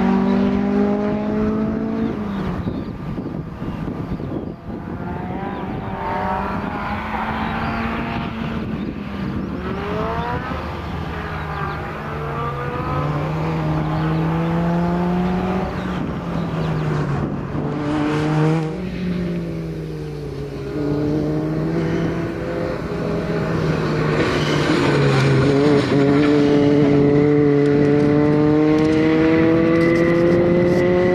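Peugeot 106 XSi's four-cylinder engine being driven hard, its revs rising and dropping again and again as the car accelerates and slows between cones. Over the last few seconds the note climbs steadily and grows louder as the car comes closer.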